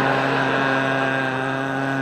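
A man's voice holding one long, steady, droning "uhhh" with his tongue stuck out, a comic imitation of a kid letting an automatic sucker twirler spin a lollipop against his tongue.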